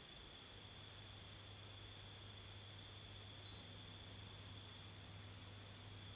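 Near silence: room tone of faint steady hiss, with a low hum coming in about half a second in.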